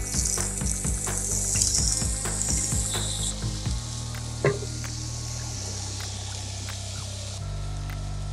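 Diced raw potatoes sizzling in hot oil as they go into a pan of fried tofu, loudest for the first three seconds or so and then dying down, with a spatula clicking and scraping against the pan while they are stirred.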